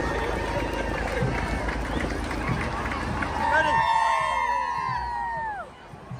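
Crowd noise along a parade route. From about three and a half seconds in, several voices call out and cheer at once in overlapping rising and falling shouts. It drops away sharply just before the end.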